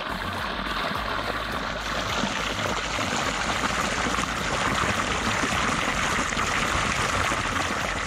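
A column of water pouring steadily from a spout into a shallow rocky pool, making a constant splashing rush.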